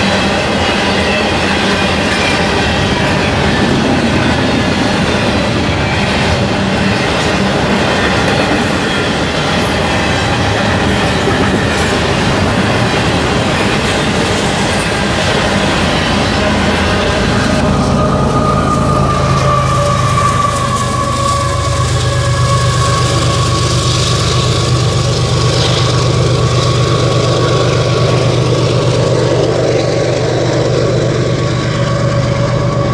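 Double-stack intermodal freight train passing close by, its steel wheels running over the rails in a loud, steady rush with squeals. A bit over halfway through, the rush thins out as the end of the train draws away, leaving a steady low hum and a high tone that slowly falls.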